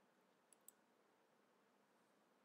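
Near silence with two faint computer-mouse clicks in quick succession, a little over half a second in.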